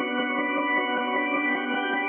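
A reversed, pitched-down synth bell sample playing back as one steady, held chord with a muffled, dark tone and no high end.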